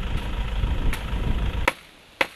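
Leafy branches rustling and snapping as they are handled, over a steady low rumble, with a few sharp clicks. The sound drops away suddenly with a click near the end.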